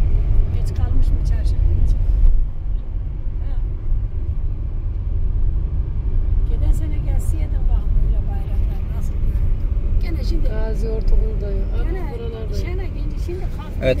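Steady low road and engine rumble inside the cabin of a Fiat Egea Cross 1.6 Multijet diesel estate while it is being driven.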